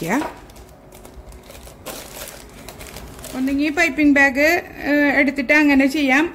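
Clear plastic zip-lock bag crinkling as it is handled and pulled down over a ceramic mug, with irregular rustles for about three seconds. A woman's voice then comes in.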